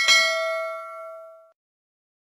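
A single bright bell-ding sound effect for a notification bell being clicked. It strikes once and rings with several tones, fading away over about a second and a half.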